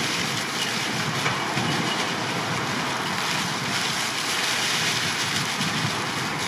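Steady rushing noise of wind on the microphone, even throughout with no distinct knocks or rustles standing out.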